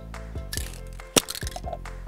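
Background music with a steady beat, and one sharp click a little over a second in from something handled on the workbench.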